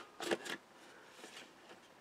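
Handheld hole punch snapping through cardstock: a few sharp clicks in the first half second, then faint rustling of the card as it is moved.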